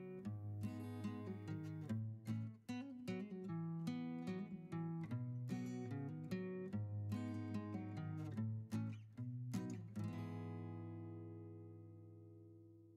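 Background music: an acoustic guitar picking notes and chords. About ten seconds in, a final chord rings on and slowly fades.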